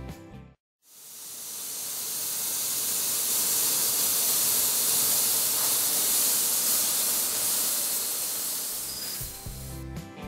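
Laser cutting machine cutting metal plate: a steady hiss that fades in about a second in and stops near the end.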